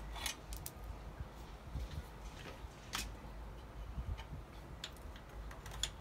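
Scattered light clicks and taps of small metal parts and tools being handled at an electric scooter's rear wheel mount, with one sharper click about three seconds in.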